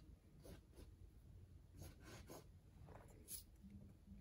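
Faint, soft scratching of a paintbrush working acrylic paint on canvas: a handful of short, separate strokes over near silence.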